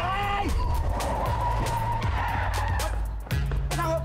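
A man's short scream, then from about a second in a long, steady car-tyre screech as the car brakes hard, with music underneath.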